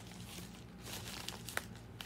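Mail packaging crinkling as a package is opened by hand, with a few sharp crackles.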